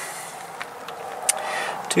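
Steady background hiss with a few faint light clicks.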